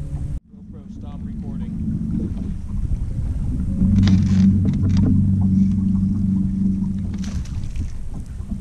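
Steady low hum of a bass boat's electric trolling motor, with water and wind noise on the boat. The sound cuts out briefly just after the start, and the hum swells louder from about halfway through.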